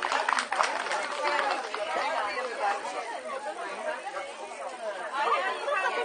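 Scattered hand clapping dying away in the first second, then several people talking at once in overlapping chatter.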